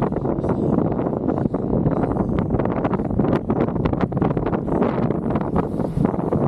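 Wind buffeting the microphone over the steady rumble of a kite buggy's wheels rolling on hard-packed sand, with frequent short knocks and rattles from the frame as it jolts along.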